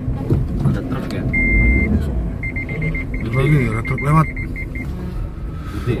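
A vehicle driving through a narrow rock tunnel, its engine and road noise a steady low rumble heard from inside the cabin. A high electronic beep is held for about half a second, then rapid beeping follows for about two and a half seconds.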